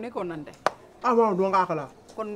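People talking in conversation, with one sharp click a little over half a second in.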